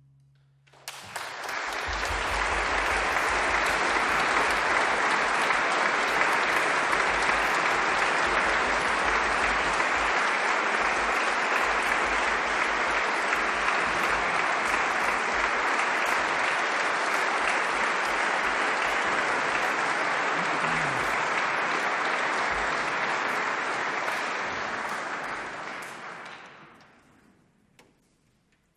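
Audience applauding, starting about a second in as the last sustained note dies away, holding steady for over twenty seconds, then fading out near the end.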